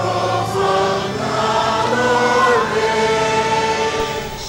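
A choir singing a slow piece in long held notes over a steady low tone.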